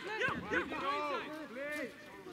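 Several men shouting short calls over one another, players calling out during a football training game.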